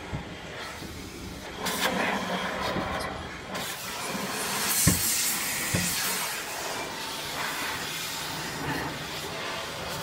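High-pressure car-wash spray hissing against the car's body and windshield, heard from inside the cabin, swelling and easing as the jet moves. Two short thumps about five and six seconds in.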